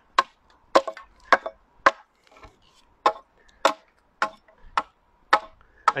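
Hand-forged side axe chopping down the side of a split ash stave held upright on a block, hewing off shavings to rough-shape and true a longbow stave. About nine sharp strikes come a little under two a second, with a short pause about halfway.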